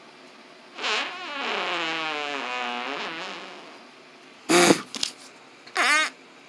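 A person's voice making one long groan that falls steadily in pitch, wavering slightly, followed near the end by two short, louder vocal sounds.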